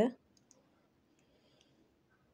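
A few faint, short clicks in a quiet room as hands work a fine steel crochet hook and thread on a lace edging; a spoken word ends at the very start.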